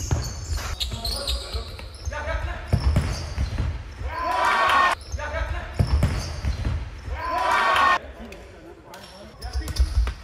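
Futsal game sounds in a sports hall: the ball being kicked and bouncing on the hard floor, with players shouting. Two long shouts, about four and seven seconds in, are the loudest sounds.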